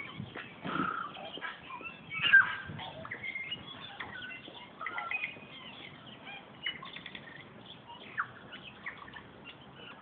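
Birds calling in short, scattered chirps and whistles, the loudest about two and a half seconds in, over a light rustle of outdoor ambience.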